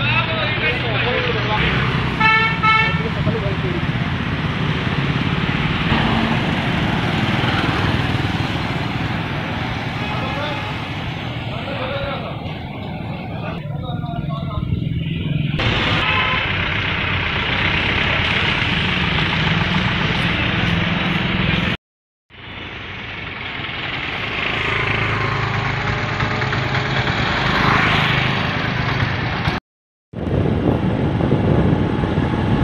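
Street traffic with a vehicle engine running steadily. A horn toots in a quick run of short beeps about two seconds in. The sound drops out briefly twice, about two-thirds through and just before the end.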